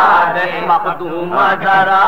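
A man chanting an Urdu marsiya in a slow, melodic elegiac recitation, drawing out the final syllable of a verse line for about half a second, then taking up the next wavering melodic phrase about a second and a half in.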